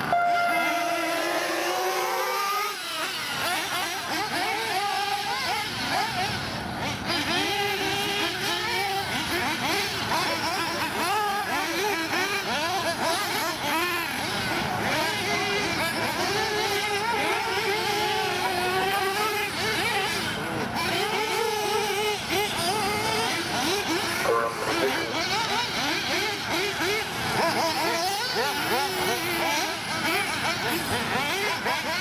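Several 1/8-scale nitro buggies' small .21 glow engines revving as they race round a dirt track. Many overlapping engine notes rise and fall constantly as the drivers throttle on and off.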